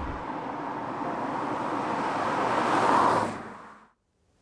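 A MINI John Cooper Works with a turbocharged 2.0-litre four-cylinder engine driving up and passing close by, its engine and tyre noise building to its loudest about three seconds in, then dying away quickly.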